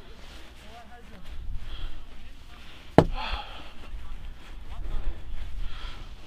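Faint voices from players on the field over a low rumble on the microphone, with a single sharp knock about three seconds in.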